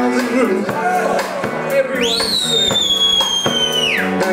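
Live rock band playing, with a loud high whistle that shoots up in pitch about halfway through, sags slowly and cuts off near the end.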